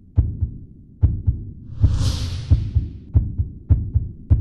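Suspense background music built on a heartbeat-like double thump, about one pair of beats a second and quickening slightly, with a whoosh about two seconds in.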